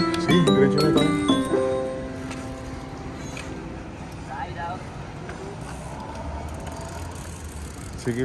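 Background music with chiming, stepping notes that fades out about two seconds in. It leaves quiet outdoor ambience with a faint voice and a low rumble of traffic near the end.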